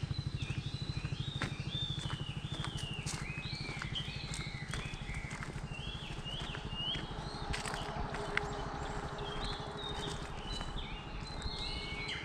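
Birds calling again and again with short whistled notes that glide up and down. Under them runs a low, rapid throb that fades over the first few seconds, with a few scattered sharp clicks.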